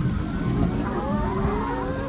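A flock of brown laying hens calling, several drawn-out rising notes overlapping one another, over a low steady hum.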